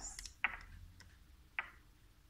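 Two short, sharp clicks about a second apart, with a fainter tick between them, after a brief hiss at the very start.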